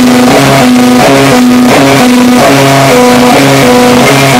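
A rock band playing live and loud in a small room, led by an electric guitar riff of held notes that change two or three times a second.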